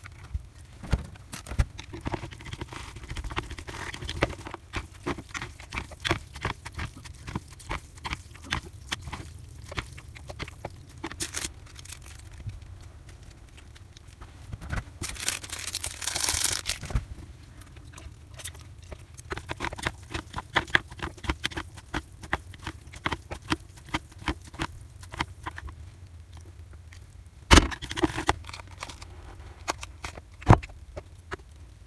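Wooden chopsticks clicking and scraping against ceramic bowls while instant ramen noodles are stirred with sauce, with a seasoning packet rustling as it is torn and emptied about halfway through. There is one loud knock near the end.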